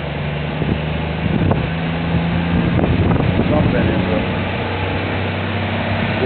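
A steady, low engine hum with an even drone that does not change, from a motor running nearby.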